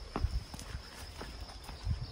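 Footsteps of a person walking: a few irregular short knocks and low thumps.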